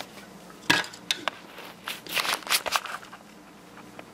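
Metal clinks and clatter of copper laptop heatsinks being picked up and handled on a table: a sharp click just before a second in, then several clattering knocks over the next two seconds.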